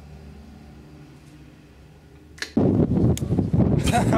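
Quiet room tone with a steady low hum for about two and a half seconds, then a click and an abrupt switch to loud wind buffeting the microphone outdoors, with laughter near the end.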